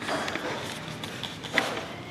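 Coffee-shop background noise, a steady hiss-like hum of the room, with a sharp click at the start and a knock about a second and a half in as the handheld camera is moved.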